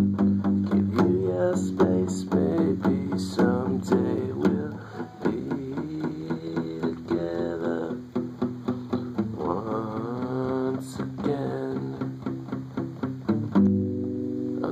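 Steel-string acoustic guitar strummed in a steady rhythm, with the player's voice singing over it at times.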